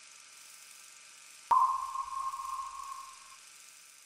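A single sonar-style ping sound effect: one clear tone that strikes about one and a half seconds in and fades away over about two seconds, over a faint steady hiss.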